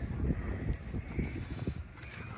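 Low, irregular rumbling noise buffeting the microphone.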